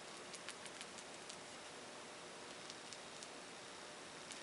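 Scattered faint ticks and rustles of a stiff scruffy brush dabbing acrylic paint onto a glass wine glass, over low room hiss.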